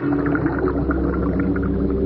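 Underwater sound effect from an animated cartoon: a steady low hum with several held tones, and faint short chirps above it.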